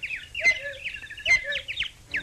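Whistled cartoon bird chirps: a quick run of short chirps, each sliding down in pitch. A sharp knock comes twice, about a second apart.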